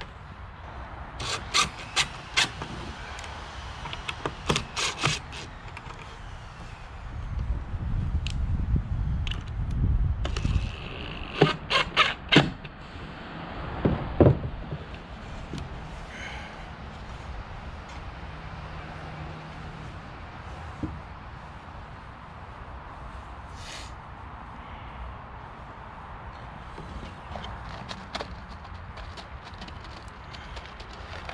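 Wooden boards knocking and clattering as they are handled, with a short cordless-drill run about halfway through as screws join the pieces of a small wooden box. Its motor whine winds down after the run.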